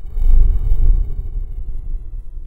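A deep, loud cinematic rumble used as a transition effect: it swells in at once, is loudest about half a second to a second in, then eases off, with faint steady high ringing tones shimmering above it.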